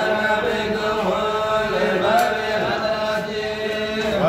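Men's voices chanting a Hamallist Sufi zikr (qasida) with no instruments, in long, held melodic lines that slide slowly up and down in pitch.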